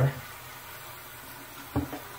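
Bathroom faucet running steadily, a stream of tap water pouring into a small plastic tank and filling it.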